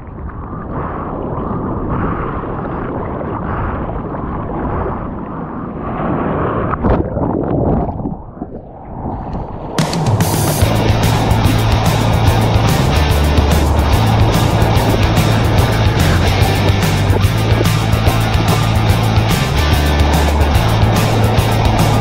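Muffled rushing of water and surf in a GoPro housing, uneven and loud. About ten seconds in it gives way abruptly to music with a steady drum beat and a bass line.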